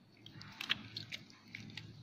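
Faint handling sounds from gloved fingers and metal forceps moving a preserved tongue specimen, with a few short soft clicks.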